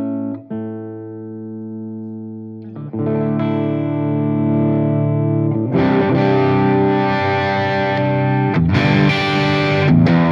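PRS CE24 electric guitar played through a Marshall JCM800 2203 valve head with guitar volume and tone full up, in overdriven crunch. One chord rings out and sustains, a new chord is struck about three seconds in, and from about six seconds in harder strummed chords come in, louder and brighter.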